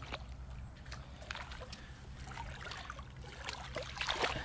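Shallow river water sloshing and splashing around rubber boots stepping in it, with small irregular trickles and splashes. A louder splash near the end as a hand sweeps through the water over a stone.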